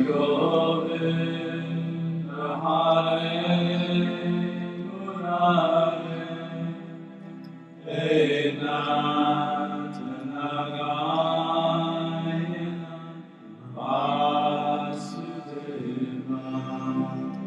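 Devotional chant music: a voice sings long, held mantra-like phrases over steady low sustained notes, with a new phrase beginning every few seconds.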